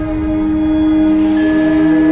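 Background film score of slow, sustained held chords; the bass note moves lower about halfway through.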